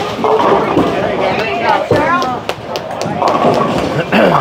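Bowling alley din with people's voices talking and calling out, and a sharp knock about two seconds in, followed by a few light clicks.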